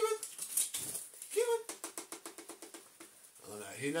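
A pet conure's beak clicking rapidly on a small plastic dustpan as it picks at food, about ten taps a second, broken by two short high calls about a second and a half apart.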